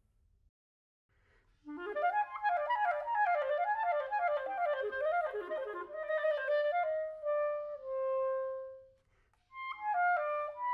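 Buffet Crampon RC Prestige clarinet playing a fast run of quick notes up and down, starting about two seconds in. It slows into a few longer held notes, the last one low and held for about a second. After a short break another phrase begins near the end.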